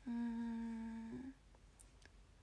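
A young woman humming one steady, level note for about a second, which ends in a short upward lilt.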